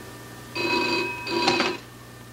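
Telephone bell ringing: two short rings in quick succession, the double ring of an old electric telephone bell.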